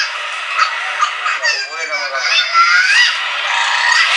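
People talking indistinctly, with voices rising and falling in pitch.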